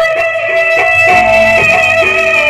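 Live folk music from a stage ensemble: a held, slightly wavering melody line over occasional drum strokes.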